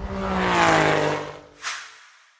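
Logo sound effect of a car engine revving past, its pitch falling steadily, followed by a short whoosh near the end.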